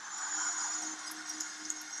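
Basketball arena crowd cheering as a three-pointer goes in: a steady roar of many voices, loudest in the first second, with one held low tone running under it.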